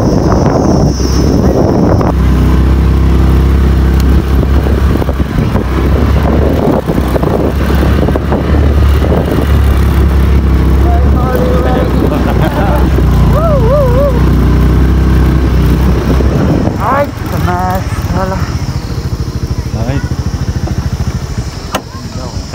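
Motorcycle engine running steadily under way, stopping about three quarters of the way through. Voices are heard over it near the middle and after it stops.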